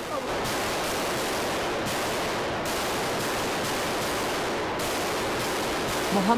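A steady, even rushing noise with no distinct shots, strikes or voices standing out from it, at a constant level throughout.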